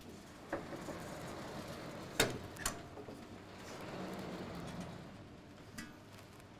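Sliding chalkboard panels being moved with a long pole: a few sharp knocks and clunks, the loudest about two seconds in, and a low rumble around four to five seconds in as a panel slides.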